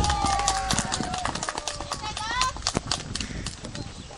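Baseball players shouting calls across the field: one long drawn-out shout that ends about a second in, then a shorter call that rises in pitch about two seconds in, with scattered sharp clicks throughout.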